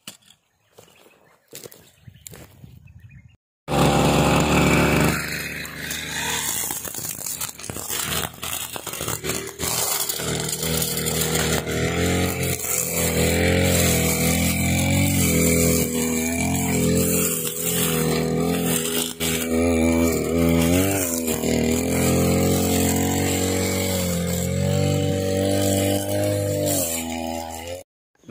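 Two-stroke brush cutter with a steel-wire cutting head starting up loudly about four seconds in and running at high revs while cutting grass. Its pitch rises and falls with the throttle and the load, and it cuts off abruptly near the end.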